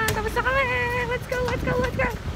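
A voice singing a melody in held, steady notes with short breaks, over a low rumble of traffic.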